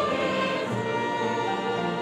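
Large church choir singing a Korean hosanna hymn of praise in sustained full chords, with orchestral accompaniment.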